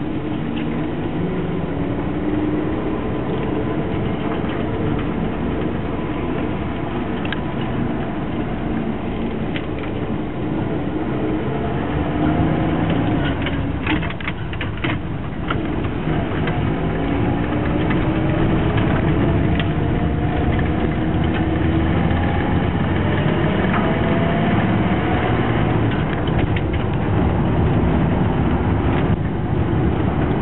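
1971 Chevrolet C10 pickup's engine heard from inside the cab as the truck accelerates. The engine pitch rises steadily, breaks off about halfway through with a few clicks as the three-on-the-tree column shifter goes up into second gear, then climbs again.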